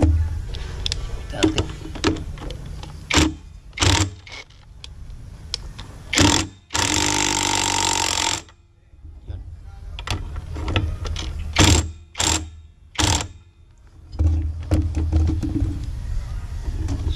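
Cordless impact wrench hammering for about a second and a half on the centre nut of a scooter's CVT clutch bell, midway through. Before and after it come scattered clicks and knocks of metal parts being handled.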